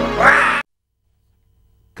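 Cartoon logo jingle music with a short, high cartoon-voice cry over it, falling in pitch, cut off suddenly about half a second in.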